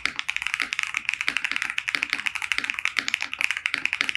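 Fast, continuous typing on a Razer BlackWidow V4 75% mechanical keyboard with its stock Razer Orange tactile switches, in a gasket-mounted, foam-dampened case: a quick, steady stream of key clacks.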